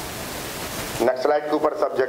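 Steady hiss for about the first second, then a man speaking Hindi close to the microphones.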